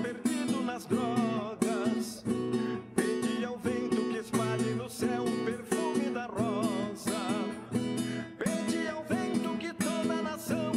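Classical guitar strummed in a steady rhythm of down and up strokes with muted, percussive chops, changing between E and B7 chords.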